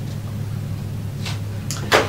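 A pause in speech: a steady low hum runs underneath, with a short intake of breath near the end before the man speaks again.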